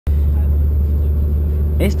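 Steady low rumble of a moving car driving along a road. A voice starts speaking just before the end.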